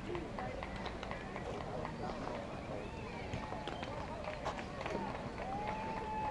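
Distant shouting and chatter from players and spectators, with a long drawn-out call near the end, over a steady wind rumble on the microphone.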